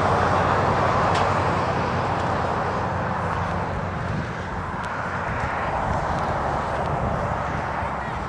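Jet aircraft engine noise overhead: a loud, steady rushing that slowly fades away.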